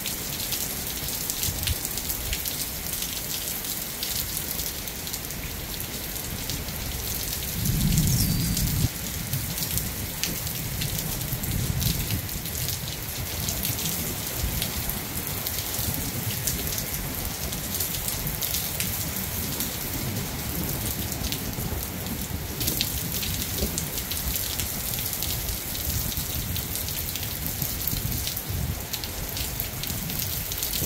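Heavy rain falling steadily. About eight seconds in, a low rumble of thunder swells for a second, then rumbles on more faintly for a few seconds.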